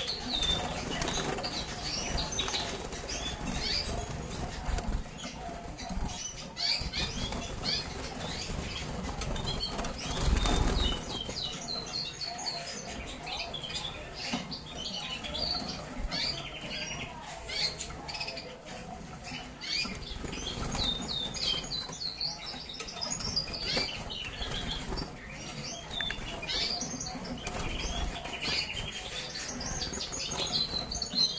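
Agate red mosaic canaries in a cage giving many short chirps and twitters, mixed with wing flutters as they move about. A louder rush of noise comes about ten seconds in.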